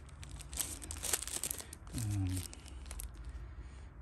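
Small clear plastic bag holding spare carbon brushes crinkling and clicking as it is handled, with a short voiced sound about halfway through.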